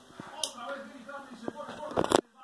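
Indistinct talking, with a sharp click about half a second in.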